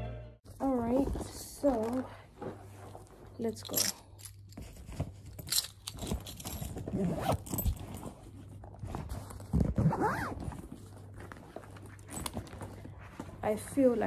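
A bag's zipper being pulled open and shut in several short strokes, with rustling as things are packed into the bag.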